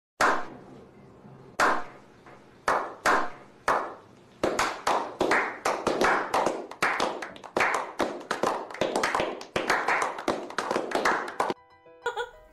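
A small group clapping hands in a slow clap: single sharp claps about a second and a half apart at first, speeding up into fast, continuous applause that cuts off suddenly near the end.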